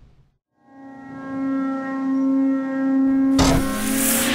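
A synthesized drone swells in after a short silence, holding one low note with its overtones steady. About three and a half seconds in, a loud whoosh sweeps in over it as the logo sting begins.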